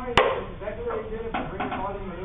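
People talking indistinctly in the background, with one sharp click just after the start.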